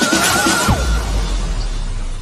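Electronic dance music in a DJ mix. The thudding kick-drum beat and a wavering, high, held synth tone cut out under a second in, leaving a hissing sweep as the mix passes from one track to the next.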